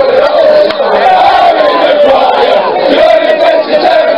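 A crowd of England football fans chanting and singing together, loudly, many men's voices carrying one wavering tune.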